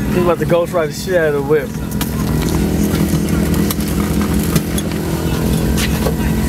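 Car engine running steadily at low revs as the car rolls slowly in gear; a man chants "I got it" over the first second or so.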